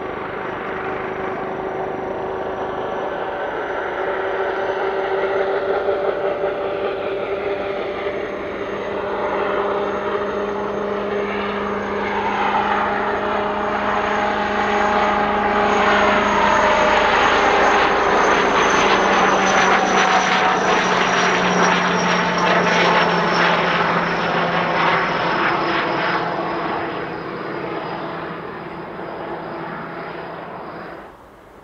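Kamov Ka-62 helicopter flying low: the high whine of its turboshaft engines and rotors over a rapid blade chop. It grows louder to a peak past the middle, with tones sliding down in pitch, then fades as it turns away.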